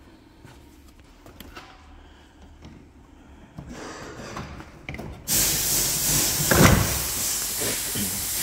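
Faint clicks and knocks of plastic frunk trim being handled and fitted on a Tesla Model 3. About five seconds in, a loud steady hiss starts abruptly and runs on, with a single thump a second or so later.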